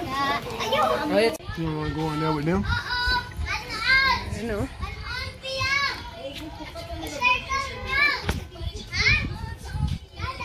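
Several children calling out and shouting in high voices as they play, in short bursts throughout.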